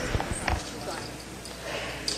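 A few short knocks and clicks in the first half-second, then the quiet hum of a large chamber with a faint murmur of voices near the end.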